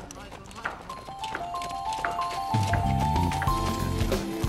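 Footfalls of a group of people jogging on a road, in a quick even patter. Background music comes in about a second in, first a high melody and then a bass line from about halfway through.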